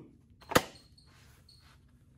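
A single sharp click from handling a full-face racing helmet at the chin strap, about half a second in, then quiet.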